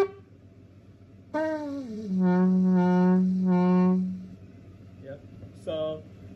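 Yemenite kudu shofar blown: a held higher note cuts off at the very start, and about a second later a new blast slides down in pitch and settles into a steady low note for about two seconds, stopping about four seconds in.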